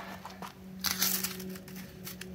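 A brief rustle of handling noise about a second in, with a few light clicks, over a steady low hum.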